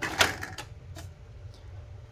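Clicks of a button pressed on a Sony CFD-700 boombox and its plastic CD lid springing open: a quick cluster of clicks at the start, then a few faint ticks, over a low steady hum.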